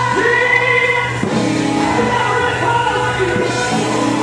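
A congregation singing gospel music together over instrumental backing with long held bass notes.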